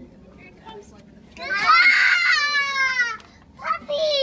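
A young child cries out in one long, loud wail that falls slightly in pitch, then gives a shorter falling cry near the end.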